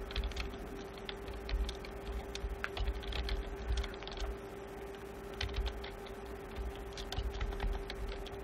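Computer keyboard being typed on in irregular runs of keystrokes, with a steady hum underneath.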